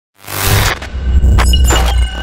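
Logo intro sound effect: a swelling burst of noise with several sharp, shattering crackles over a deep bass rumble, and a thin high tone coming in about three quarters of the way through.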